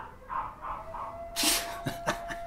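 A noonday whistle, a siren-like call on one steady pitch, starts sounding less than a second in and holds on. Near the middle there is a short, sharp laughing exhale from a man.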